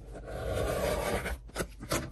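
Rotary cutter blade rolling through the trim allowance of a stitched leather wallet along a steel ruler: a steady scraping cut lasting about a second and a half, then a few light clicks near the end.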